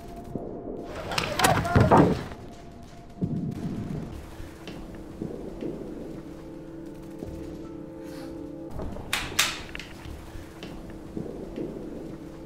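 A few sharp paintball marker shots over background music with a steady drone. The loudest shots come about a second and a half in and again around nine seconds.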